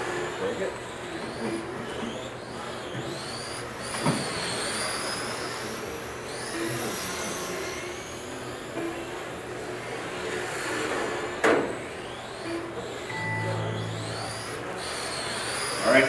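High-pitched whines of 1/10-scale electric RC touring cars with brushless motors, rising and falling as they accelerate and brake around a carpet track. Two sharp knocks, about four seconds in and again near the middle.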